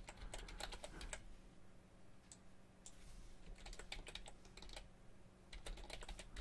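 Computer keyboard being typed on, faint: quick clusters of keystrokes with short pauses between.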